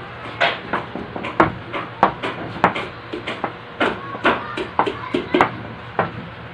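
A run of irregular sharp clicks and knocks, about two or three a second, over a faint steady hum.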